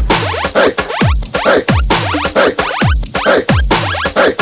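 Electronic background music with a heavy beat: a deep bass kick that slides down in pitch, repeating about twice a second.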